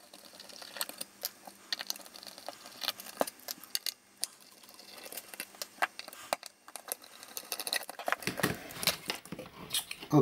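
Irregular small metallic clicks and taps of screws and standoffs being undone on an aluminium panel by hand. From about eight seconds in come fuller handling knocks and rubs as the board is moved.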